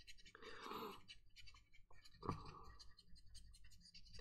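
Near silence: room tone with a faint, brief rustle about half a second in and a soft click a little past two seconds.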